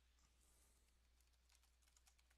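Near silence, with faint computer keyboard typing: a few soft, scattered key clicks, more of them in the second half.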